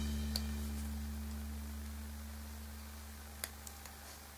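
Background music, a low held note slowly fading out. Over it come a few faint clicks, one about a third of a second in and two near the end, as the plastic hook and rubber bands tap the metal fork tines.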